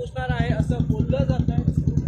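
Motorcycle engine running close by with an even, rapid thumping beat, alongside men's voices.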